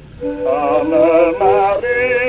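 Acoustic-era 78 rpm record from about 1912 of a Dutch song with accordion accompaniment: a short melodic phrase of quickly changing notes, after a brief dip in level at the start.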